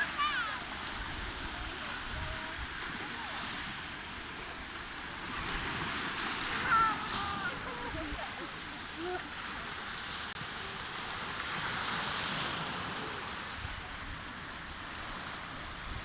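Small Baltic Sea waves breaking and washing up a sandy shore: a steady rush of surf that swells twice, about a third of the way in and again past the middle.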